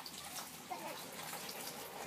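Steady running water in an aquaponics system, as filtered water flows through the channels and down into the fish tank.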